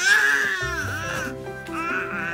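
A baby crying, loudest in the first half-second, over background music.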